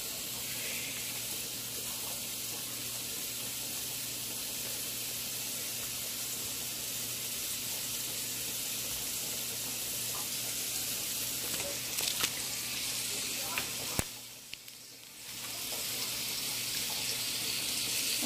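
Butter sizzling steadily in a hot frying pan, a high even hiss that dips briefly near the end, with a few faint clicks.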